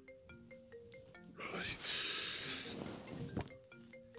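Mobile phone ringtone playing a short marimba-like melody of stepped notes. It breaks off in the middle for a second or so of noise and a click, then starts the melody again near the end.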